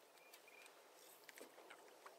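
Near silence: faint outdoor background with a few faint, short ticks.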